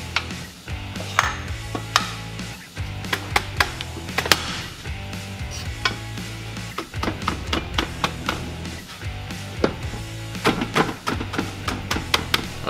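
Irregular sharp metal clinks and knocks as the cast housings and plates of a Mazda 13B rotary engine are set down and stacked one on another. Background music plays underneath.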